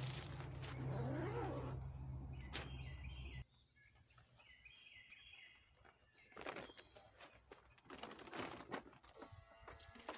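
Faint rustling and knocks of someone stepping into a pop-up shower tent, with a few bird chirps. A steady low hum runs through the first three and a half seconds and cuts off suddenly.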